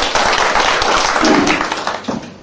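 Audience applauding: many hands clapping densely, fading down near the end.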